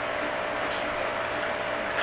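Boiled crab legs being broken and pulled apart by hand: a few faint cracks and wet crackles of shell and meat over a steady background hum.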